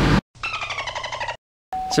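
A short edited-in sound effect: a buzzy tone with many overtones, sagging slightly in pitch and lasting about a second. It is set between two abrupt cuts to silence, just after a brief tail of truck-cabin noise.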